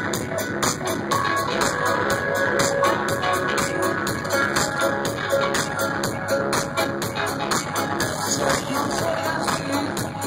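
Live electronic dance music with a steady, driving beat, played by a band through a stage sound system and recorded loud from within the audience.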